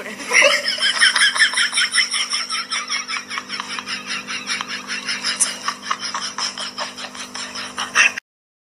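Rapid, continuous giggling laughter in quick even pulses, with a steady low hum underneath.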